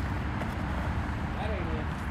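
Steady outdoor background noise with a low rumble, with no distinct event standing out.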